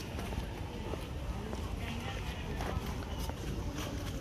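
Background chatter of people with irregular footsteps on a paved brick path, under a steady low rumble.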